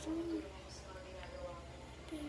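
A person's voice making a short, wordless hum in the first half second, then faint room sound.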